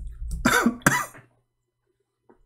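A man coughs and clears his throat in two short bursts, about half a second and a second in.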